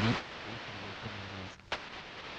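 The last syllable of a spoken word, then a pause holding only faint, steady background hiss from the recording. About one and a half seconds in, the hiss briefly drops out, and a short click follows.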